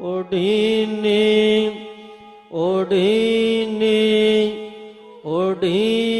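A male voice chanting Gurbani verses of the Hukamnama in long, drawn-out sung notes. There are three phrases, each opening with an upward swoop in pitch, with short quieter dips between them.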